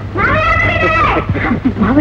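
A child's high-pitched voice in one long drawn-out call that rises and then falls, followed by shorter excited children's voices.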